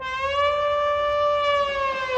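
Marching band brass holding one long note in unison, its pitch sagging slightly near the end.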